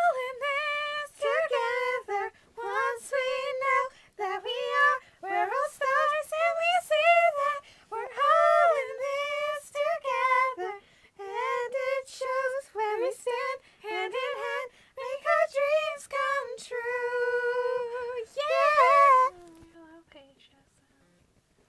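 A high-pitched voice singing a melody in short phrases without clear words, the notes sliding up and down. It ends on a held note about a second before the end.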